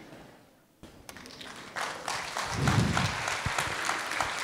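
Audience applause: many hands start clapping about a second in, and the clapping swells to a steady level.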